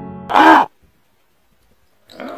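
Piano music cutting off, then one loud, short crow caw about half a second in.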